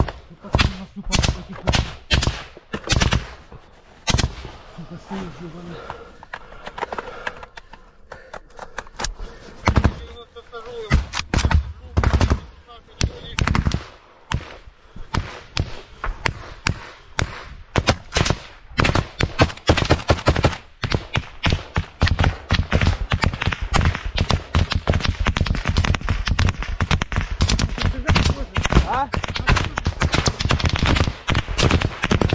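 Small-arms gunfire in a firefight: scattered shots and short bursts at first, becoming a dense, nearly unbroken stream of rapid shots and bursts from a little past halfway.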